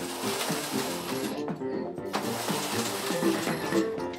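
Knitting machine carriage pushed across the metal needle bed with a rushing, rattling run, twice with a short pause between passes, over background music.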